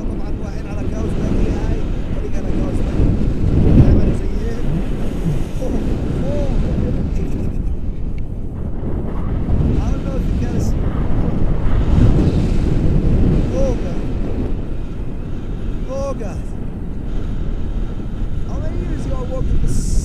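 Wind buffeting the camera's microphone in flight on a tandem paraglider: a loud, gusty rush that swells about 4 s in and again about 12 s in.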